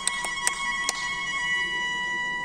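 The start of a song's backing track over the hall speakers: a high held synth chord sounding steadily, with a few sharp clicks in the first second.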